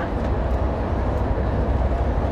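Steady road noise of a coach travelling on a motorway, heard from inside: a constant low rumble with even road noise above it.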